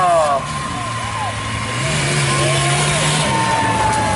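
Off-road race jeep's engine running under load as it crawls through deep mud, its pitch rising a little about halfway through, with crowd voices mixed in.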